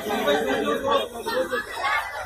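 Several people talking at once: overlapping chatter of a small crowd.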